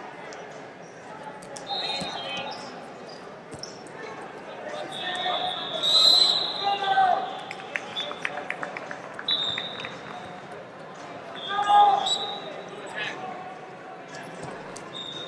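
Wrestling hall din: voices shouting from the mats and referee whistles blown several times, some held for a second or two. About halfway through comes a quick run of sharp slaps or claps.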